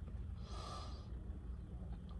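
Quiet car cabin with a steady low rumble and one soft breath about half a second in.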